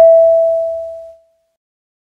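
A single chime sound effect: one bell-like tone struck once, fading away over about a second.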